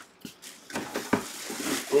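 Handling noise: several short clicks and knocks, the loudest a little past halfway, over faint room noise.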